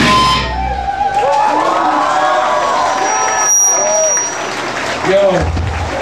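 A live heavy rock band's song stops abruptly about half a second in, leaving a brief low amplifier hum. Then come a man's voice calling out and crowd noise, with a low bass rumble returning near the end.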